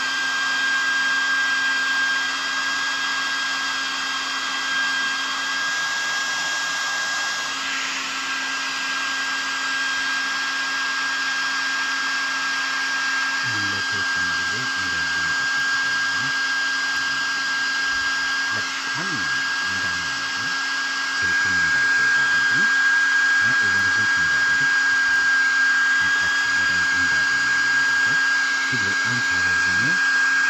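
Small handheld hair dryer running steadily, a constant rush of air with a high, steady motor whine, blown close over a phone to heat it. It gets slightly louder about two-thirds of the way through.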